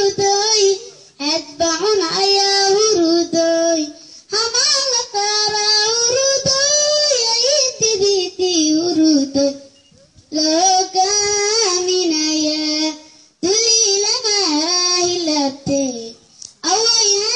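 A boy singing a Somali song into a microphone, amplified through a PA. He sings in long melodic phrases separated by a few brief pauses.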